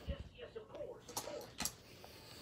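Medical supplies and packaging being handled: light rustling with a few sharp clicks, two of them about a second and a half in.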